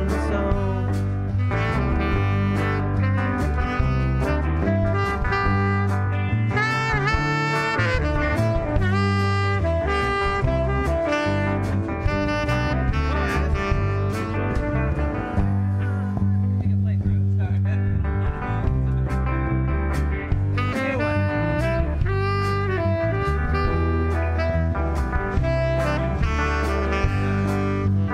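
Live band playing an instrumental break: a saxophone lead over electric guitars, bass and drums, with bending lead notes.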